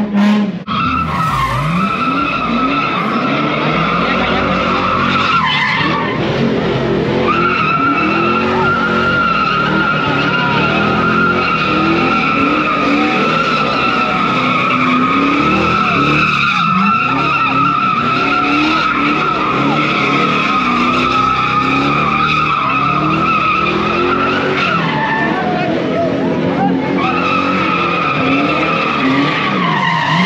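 A car's tyres squealing in a long, steady screech as it spins donuts, breaking off briefly twice. Underneath, the engine's revs rise and fall.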